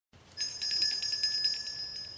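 Small bells jingling, shaken rapidly at about ten strokes a second for over a second, then ringing away.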